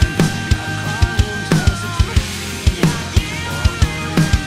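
Rock drum beat on a TAMA Starclassic acoustic kit with Meinl Byzance cymbals: a fast kick-drum pulse with snare backbeats, played over the song's recorded band track with sustained guitar or vocal lines.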